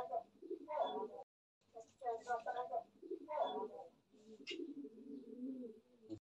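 Indistinct voices, then from about four seconds in a low, wavering coo of a pigeon that lasts nearly two seconds.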